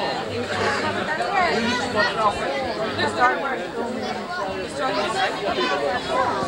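Several people talking at once in overlapping conversation, too jumbled to make out the words.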